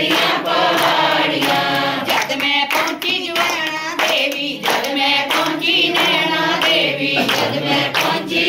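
A group of voices singing a devotional bhajan together, with hand-clapping in time.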